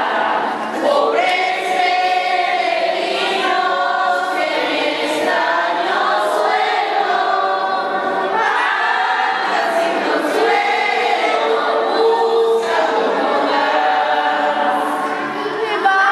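A crowd of children and adults singing together in phrases: the posada song asking for lodging.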